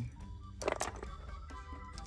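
Background music playing quietly. A little over half a second in, a brief clatter of clicks and rustle comes from small cardboard puzzle canisters being handled on a shelf.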